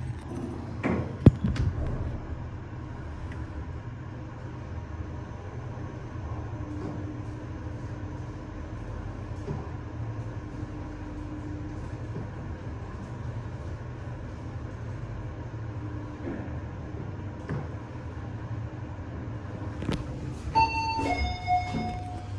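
Fujitec ZEXIA machine-room lift car riding down at 60 m/min. The doors shut with a sharp click about a second in, then there is a steady low running hum of the car in motion. Near the end comes a two-note arrival chime, high then lower.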